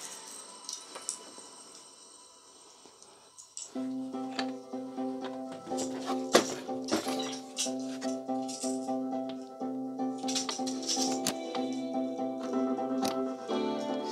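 A few faint clicks as speaker wire is connected. Then, about four seconds in, music starts suddenly through a Jensen in-wall speaker, with steady held chords and quick shaker-like percussion. The speaker, found at the dump after heavy rain and dried out, is working and sounds good.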